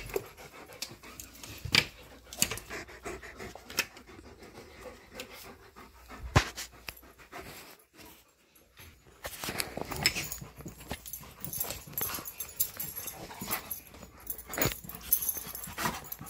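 Excited dogs, an Alaskan Malamute and a Siberian Husky, panting and moving about, with scattered sharp clicks and knocks, the loudest about six seconds in. There is a brief lull around the middle, and the panting is denser after it.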